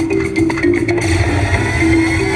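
King of Africa video slot machine's bonus music: a rhythmic percussive tune with sharp drum-like hits. About a second in, a bright shimmering layer with a slowly rising tone joins as the free-spin reels land.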